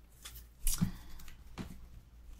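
Tarot cards being handled: a stack gathered and squared in the hands, then fanned out, giving a few brief card slaps and rustles.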